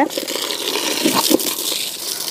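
Water running from a tap in a steady stream, splashing into a bucket.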